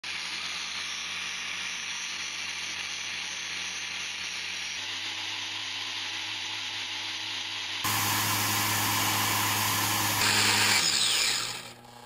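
3D-printed supercharger's compressor spinning at high speed on a motor-driven test rig: a steady whine with rushing air, stepping abruptly louder about eight seconds in. Near the end it spins down, the whine falling in pitch and fading.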